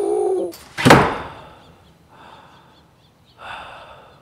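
A wooden front door slams shut with one sharp bang about a second in, just after a short wavering voice-like sound fades. Two heavy gasping breaths follow.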